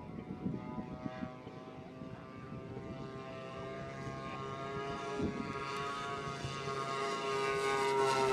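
Twin propeller engines of a radio-controlled scale OV-1 Mohawk model running steadily in flight, growing louder as the plane flies in closer.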